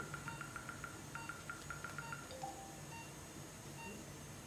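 Electronic beeping from a surgical GPS navigation system during acquisition of points on the coracoid: two quick trains of high beeps at about eight to ten a second, the second train stopping a little past halfway.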